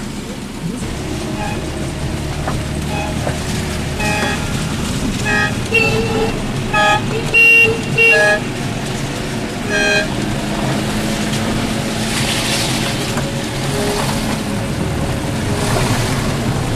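Citroën 2CV car horns tooting in a string of short beeps of differing pitch, about eight toots in the first ten seconds, the loudest around the middle. Under them is the steady running of car engines.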